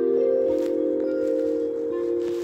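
Background music: slow, calm ambient music of long held notes with chime-like tones.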